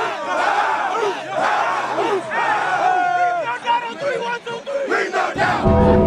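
A huddle of football players shouting and hollering together in many overlapping voices, firing each other up. Music comes in just before the end.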